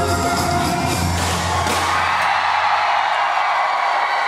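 Live K-pop concert music heard through a large hall's sound system, with its bass line dropping out a little under halfway through as the song ends, leaving a crowd screaming and cheering.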